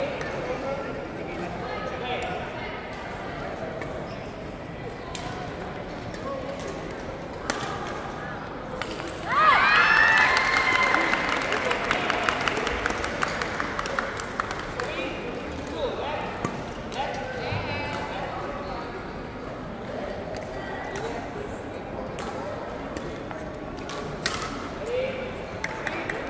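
Badminton rally in a large hall: sharp racket-on-shuttlecock hits and sneakers squeaking on the court floor, over a steady murmur of voices. About nine seconds in comes a louder stretch of high, rising squeals that eases off over a few seconds.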